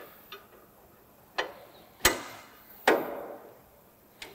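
Metal knocks and clicks of a multi-tool levering a draper header's reel cam round to a new position: a few sharp knocks, each ringing briefly, the loudest about two seconds in.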